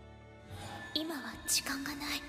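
A woman speaking softly, almost whispering, in Japanese anime dialogue over quiet background music; she starts about half a second in.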